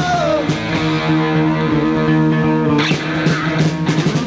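Punk rock band playing live: after a sung line ends, a held guitar chord rings steadily for about two and a half seconds, then the drums and full band crash back in with a yelled vocal near the end.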